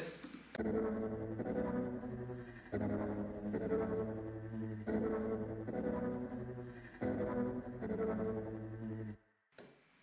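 A progression of four sustained synth chords, each about two seconds long, played back from the 'Distorted Warmth' preset of Output's Exhale vocal-synth plugin. The chords stop about nine seconds in.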